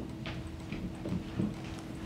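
A few light, irregular knocks and shuffles of a person walking up to a table and settling into a chair, over a steady low hum.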